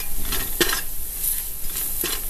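Onions and ground spices sizzling in hot oil in a pressure cooker while a metal ladle stirs them, scraping against the pot's base several times.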